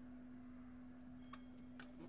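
Near silence: room tone with a steady low hum, and two faint clicks in the second half from a plastic DVD jewel case being handled.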